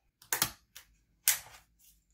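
Sharp plastic clicks and knocks from a Lenovo ThinkPad T440p laptop being handled as its battery is taken out: two loud clicks about a second apart, with a fainter one near the end.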